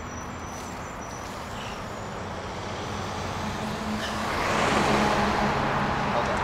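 Road traffic on a busy road, with a steady low engine drone. It swells to its loudest about four to five seconds in as a tractor-trailer truck passes close by.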